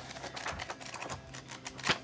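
Pages of a lined paper notebook being flipped through by hand: a quick run of light paper ticks, with one sharper click near the end.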